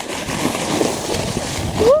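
A sled sliding fast down a snowy hill: a steady scraping hiss of snow under the sled, mixed with wind on the microphone. A voice cries out with a rising 'oh' near the end.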